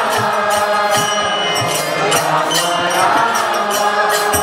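Kirtan: a lead singer and a seated group chanting a mantra together over a harmonium's steady held chords. Small hand cymbals (karatalas) and a hand drum keep a steady beat.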